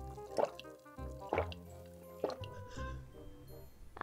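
Gulps of milk swallowed about once a second, over soft background music.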